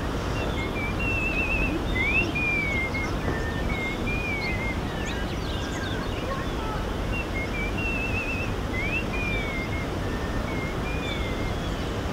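A songbird singing clear whistled phrases, with a short trill, a quick upward sweep and falling slurred notes; the same phrase comes twice, about seven seconds apart. Under it runs a steady low background noise.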